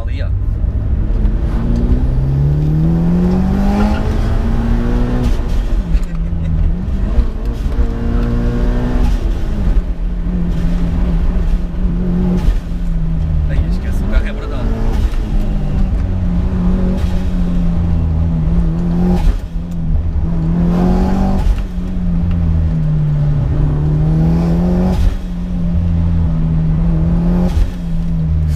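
Mitsubishi Lancer Evo VIII's turbocharged 2.0-litre four-cylinder, heard from inside the cabin while driven hard. The engine pitch climbs and drops back at each gearchange several times early on, then holds fairly steady with a few short dips, over constant road rumble.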